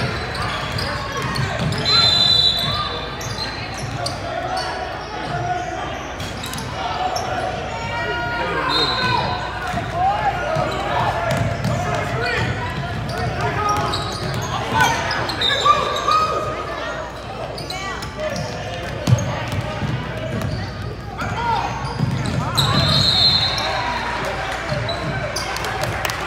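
Basketballs dribbling on a hardwood gym floor during a game, echoing in a large hall, over a steady murmur of spectators' voices. A few short high-pitched squeaks come through at intervals.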